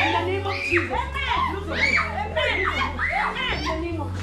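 Several high-pitched voices screaming and wailing at once, their pitch swooping up and down, over a low steady drone in the music.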